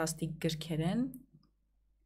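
A woman speaking for about the first second, then a pause of near silence.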